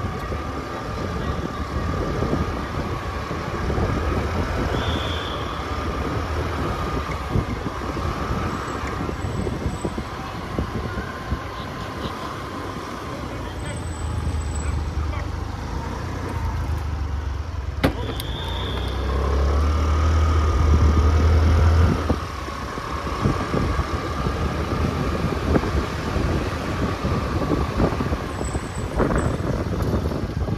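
A car moving slowly, with its engine and tyres making a steady low rumble and wind buffeting the microphone. The rumble swells louder for a few seconds about two-thirds of the way through.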